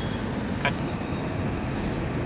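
Steady low rumble of a car's interior, heard from inside the cabin, with one brief faint noise about two-thirds of a second in.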